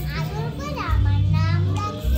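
A young girl speaking in a loud, animated, sing-song voice as she acts out a dramatic monologue, her pitch swooping up and down, over a low hum.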